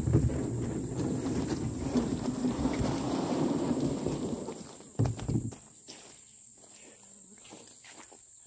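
Plastic kayak hull dragged over gravelly ground, a steady grinding scrape that stops about four and a half seconds in, followed by a couple of knocks.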